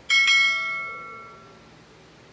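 A notification-bell ding sound effect as the cursor clicks the bell icon: a bright bell strike near the start that rings out and fades away over about a second and a half.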